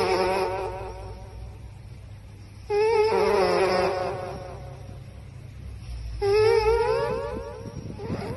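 A sleeping dog whistling through its nose as it breathes in its sleep: three long warbling whistles about three seconds apart, one per breath, each starting strong and fading away.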